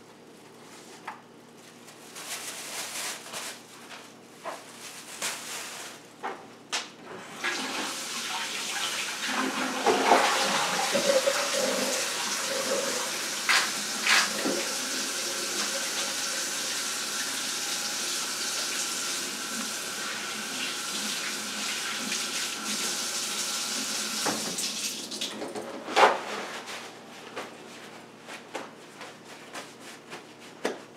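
A kitchen tap runs into the sink for about seventeen seconds, with a few knocks and clatters while it runs, then is turned off abruptly. Before it, a plastic grocery bag rustles.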